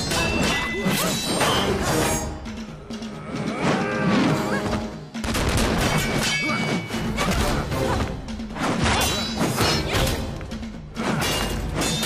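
Sound effects of a fast melee fight: repeated metal clashes and heavy impacts of a mace and other weapons against a round metal shield and armour, some strikes ringing briefly. A music score plays beneath.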